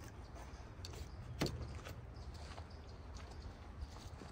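Quiet handling of a nylon ratchet strap and its metal ratchet buckle, with a few light clicks and one sharper knock about a second and a half in, over a low steady rumble.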